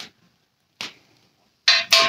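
Two short, sharp knocks about a second apart, then a man starts talking near the end.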